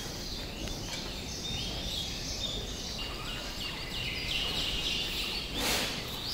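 Small birds chirping in quick, repeated high notes, growing busier in the second half, over a steady low background hum. A short rush of noise comes near the end.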